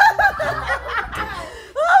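A woman laughing: a quick run of short chuckles that fades out about a second and a half in.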